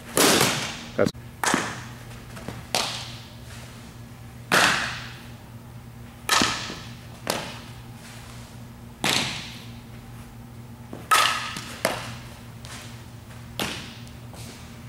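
A series of about ten sharp softball impacts, each echoing in a large indoor hall: an aluminum bat hitting the ball near the start, then balls popping into a glove and being thrown during infield drills.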